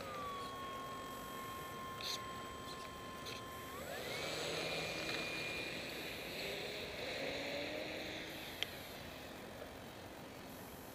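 Electric motor and propeller of a ParkZone P-47 RC model plane whining at a steady pitch, then rising sharply about four seconds in as the throttle opens for takeoff, holding a higher whine with propeller rush as it climbs. A single sharp click near the end.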